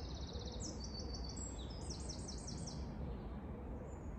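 A small songbird singing: quick runs of short, high notes in several phrases during the first three seconds, over steady low outdoor background noise.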